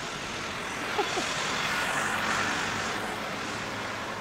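Busy city road traffic: a steady wash of passing cars and trucks, swelling louder as something passes in the middle and then easing off.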